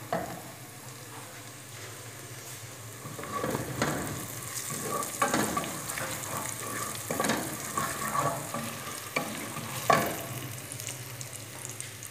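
Food frying in oil in a steel pot, sizzling steadily, while a wooden spoon stirs it. From about three seconds in the spoon scrapes and knocks against the pot several times, the sharpest knock near the end.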